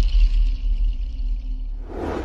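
Station ident music tailing off: a deep rumble under a few held tones that slowly fade. A whooshing swell comes in right at the end.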